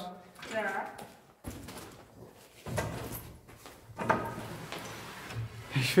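A brief voice at the start, then irregular scraping, creaking and knocking of a rusty steel rack frame as a man clambers over it.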